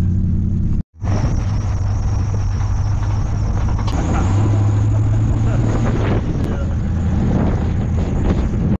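Pickup truck driving: steady engine drone and road noise, with a brief dropout just under a second in.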